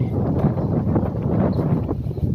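Wind blowing on the microphone: a continuous low rushing noise.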